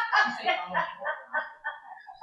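A man laughing into a handheld microphone: a run of short pitched 'ha' bursts, about four a second, that fade out.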